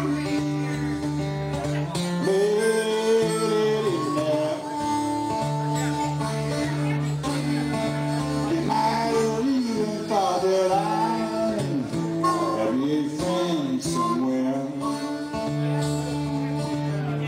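Live acoustic blues: an acoustic guitar keeps a steady low pattern while a harmonica plays the lead, its notes bending and sliding in pitch.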